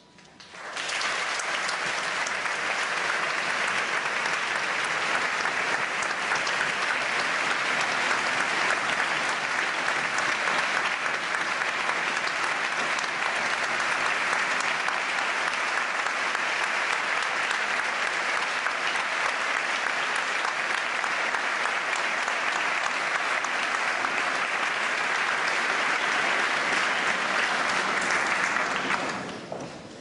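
Audience applauding. The clapping starts suddenly about half a second in, holds steady, and fades out near the end.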